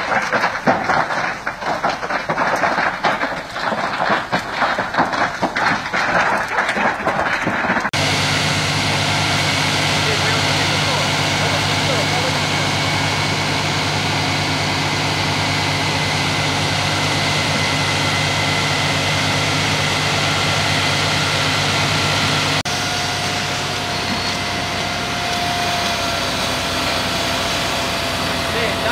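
A dense, irregular crackling noise, cut off about eight seconds in by the steady, unchanging run of a fire engine's engine, with faint steady tones over it.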